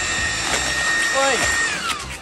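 Cordless leaf blower running with a steady whine and rushing air. Near the end it is switched off, and the whine falls in pitch as the fan spins down.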